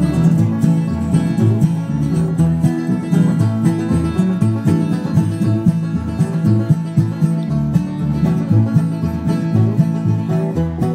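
A live bluegrass band plays an instrumental break with no singing, led by a strummed acoustic guitar keeping a steady rhythm.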